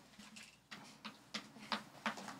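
A few faint, scattered small clicks and ticks over quiet room tone.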